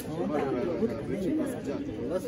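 Speech only: two men talking with each other in conversation, not in English.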